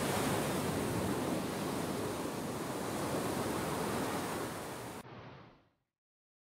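Ocean surf, waves washing in as a steady wash of noise, which cuts off sharply about five seconds in and fades to silence just after.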